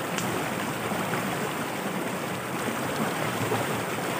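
Steady rush of a creek running over rocks, with a faint tick just after the start.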